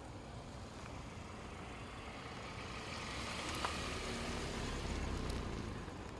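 A road vehicle passing by: its engine and tyre noise swells over a few seconds, then fades near the end.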